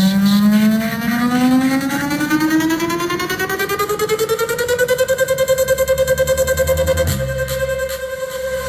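Portable Bluetooth speakers playing loud electronic dance music: a buzzy synth tone rising steadily in pitch over about five seconds with a fast pulsing that speeds up, then holding its pitch, with a deep bass coming in near the end.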